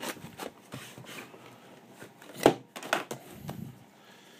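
Handling noise: a few light clicks and knocks as a cardboard VHS box is worked out of its plastic protective case, with one sharper knock about two and a half seconds in.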